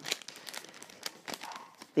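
A steelbook case in a plastic protector sleeve being handled: scattered faint clicks and crinkling of plastic.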